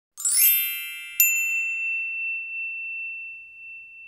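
Chime sound effect: a bright shimmering cluster of high tones, then a single sharp ding about a second in whose one high tone rings on and fades away over the next few seconds.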